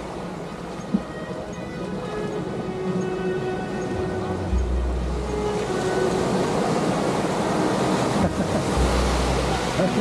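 Background music with held notes and a deep bass, laid over small waves breaking and washing on a pebble shore; the surf grows louder in the second half. A single sharp click about a second in.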